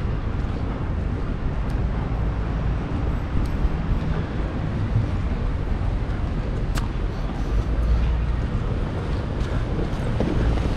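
Steady outdoor background noise with wind rumbling on the microphone, and a few faint ticks.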